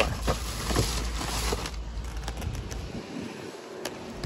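Cardboard snack boxes being picked up and handled among plastic trash bags: a few light knocks and rustles over a steady low rumble.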